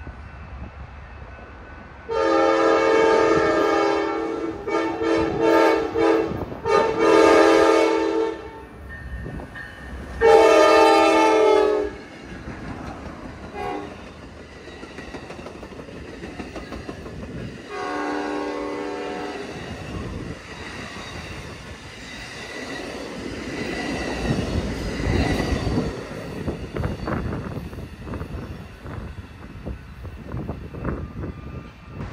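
Amtrak passenger train sounding its multi-note horn in four long blasts over about ten seconds, then a softer blast about halfway through, as it rolls past with wheels clattering over the rails.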